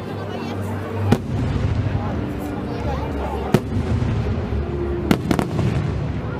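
Fireworks bursting overhead: four sharp bangs, one about a second in, one midway, and two in quick succession near the end, over a steady murmur of crowd voices.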